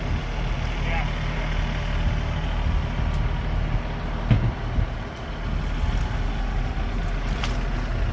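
A steady low engine hum that holds unchanged throughout, with a brief low knock a little past four seconds in.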